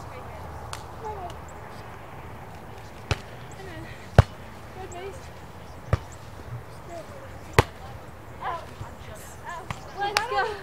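A beach volleyball being struck by hand in a rally: four sharp smacks about one to two seconds apart, the loudest a little over four seconds in. Faint voices come in near the end.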